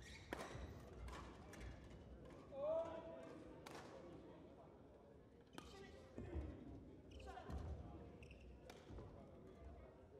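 Badminton rally in a large hall: sharp racket strikes on the shuttlecock every couple of seconds, low thuds of players' feet on the court, and a brief rising squeal about two and a half seconds in, the loudest sound.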